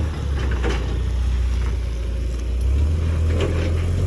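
Forklift engine running steadily as the forklift drives up to the flatbed trailer to unload it, a low, even rumble.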